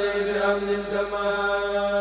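A man chanting a Mouride khassida in Arabic, holding one long, steady note.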